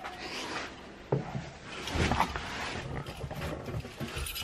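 Rustling and knocks as a person climbs into the driver's seat of an old Mini Clubman estate. There is a sharp knock about a second in and a louder burst of movement about two seconds in.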